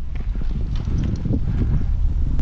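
Outdoor microphone noise: a loud, deep rumble of wind and handling on a rifle-mounted camera, broken by irregular small knocks and rustles.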